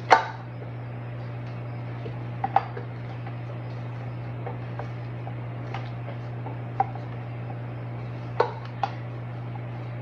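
Rubber spatula scraping and tapping against a stainless steel stand-mixer bowl, heard as a handful of short, scattered knocks over a steady low hum.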